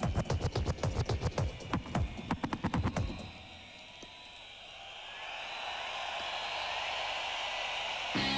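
Fast techno track with a dense, driving kick-drum beat that breaks off about three seconds in. After that, a hiss-like wash of noise swells steadily louder through the rest.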